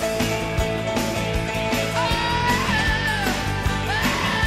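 Rock song playing: steady drum beat with bass and guitar, and a sliding lead melody coming in about halfway.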